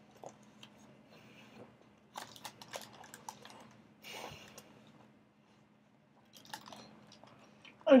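A person chewing a mouthful of burrito with her mouth closed: soft wet clicks and crunches in short bursts with pauses between them, over a faint steady hum.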